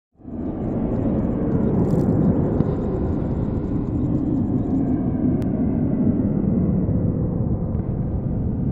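Steady, dense low rumble of an intro sound effect, fading in at the start, with a single faint click about halfway through.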